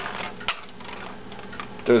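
Light clicks and taps of a hand handling a disposable aluminium foil pan, with one sharper click about half a second in, over faint room noise.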